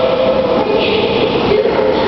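Hot tub jets running and churning the water: a loud, steady rush of bubbling water.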